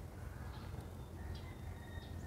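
Quiet background noise: a steady low rumble with a few faint high tones, and no clear event.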